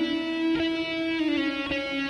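Electric guitar playing a slow single-note melody, each picked note held and ringing. One note glides down in pitch a little past the middle.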